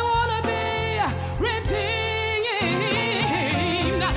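A woman singing solo, holding long notes with vibrato and bending through melismatic runs, over steady instrumental accompaniment.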